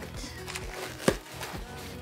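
Cardboard shipping box being handled and pulled open: rustling and scraping of cardboard, with one sharp knock about halfway through, over faint background music.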